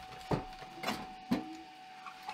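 Light wooden knocks from an old wooden chest and its lift-out tray as they are handled and the lid is brought down: three knocks about half a second apart, the last followed by a short creak. A faint steady high hum runs underneath.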